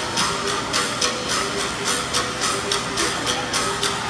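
Philippine gong-and-bamboo ensemble: a row of small bossed gongs and bamboo percussion struck in a fast, even rhythm of about five strikes a second, with the gong tones ringing under the sharp clacks.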